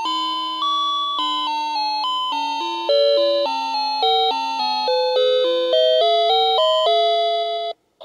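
Playskool Storytime Gloworm toy playing a simple electronic chime melody through its small speaker: a steady run of single notes stepping up and down, leading into its next story. It stops abruptly near the end.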